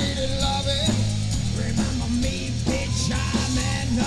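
Live rock band playing: electric guitars over a drum kit, loud and steady, with a wavering melody line on top.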